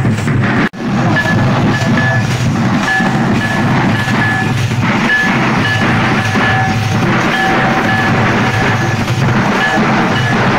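A troupe of large double-headed barrel drums beaten with sticks, playing a loud, continuous festival dance rhythm, with a high note repeating in short dashes over it. The sound cuts out for an instant about a second in.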